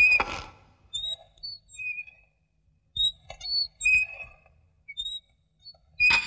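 Short, scattered high bird chirps and whistles with quiet gaps between them, as night ambience. A loud music chord dies away at the start, and another strikes right at the end.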